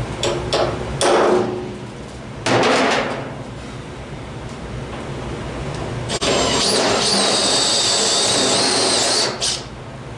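Hammer striking a center punch on a sheet-steel truck roof skin to mark the spot welds: a few light taps, then two heavy ringing blows about a second and a half apart. From about six seconds in, a cordless drill runs for about three seconds with a steady high whine as it drills out a spot weld, with a short burst just after.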